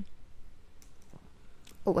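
A few faint, scattered clicks of typing on a computer keyboard.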